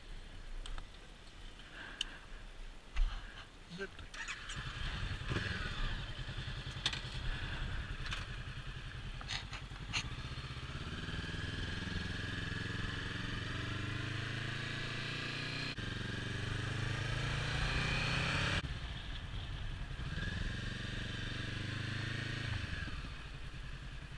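Honda CB500F parallel-twin motorcycle engine pulling away and accelerating, its pitch climbing through a long rise that falls away suddenly about 18 seconds in, then a shorter rise that drops off near the end.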